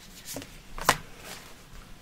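A tarot card being drawn from a handheld deck and laid on a cloth: a soft rustle of card stock with one sharp snap about a second in.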